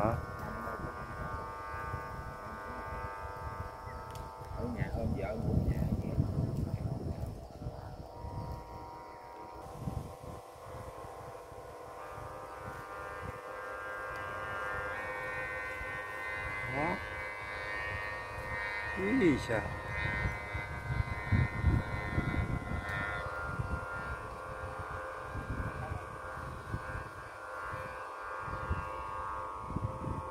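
Kite hummer bows vibrating in the wind, a steady droning hum of several tones that waver and shift in pitch now and then, over wind rumble on the microphone.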